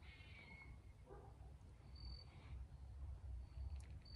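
Near silence: faint outdoor background with a low hum and a few brief high chirps.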